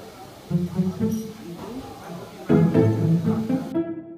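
Instrumental background music with plucked strings and a bass line, over a low background hubbub that cuts off just before the end while the music carries on.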